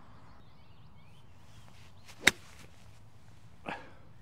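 Sand wedge striking a golf ball cleanly out of the rough: a single sharp click about two seconds in.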